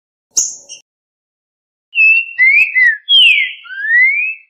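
Green-winged saltator (trinca-ferro) song: a short sharp call note about half a second in, then from about two seconds a run of loud, clear whistles that hold, slide down and slide up in pitch.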